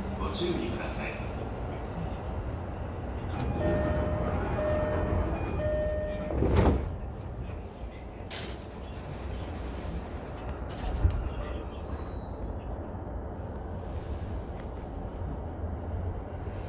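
Keihin-Tohoku line electric commuter train running, heard inside the front cab: a steady low rumble of wheels on rail. About four to six seconds in there are three short, evenly spaced beeps. Shortly after them comes a brief loud burst of noise, and a sharp click follows later.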